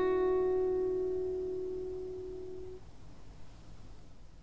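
Acoustic guitar chord, strummed just before, ringing out and fading away over about three seconds, leaving faint room noise.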